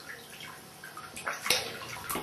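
Water sloshing and splashing in a toilet bowl in irregular bursts, with the sharpest splash about one and a half seconds in.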